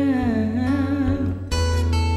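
A man's voice holding a wordless sung note that wavers in pitch, over acoustic guitar; about a second and a half in, a strummed acoustic guitar chord rings out.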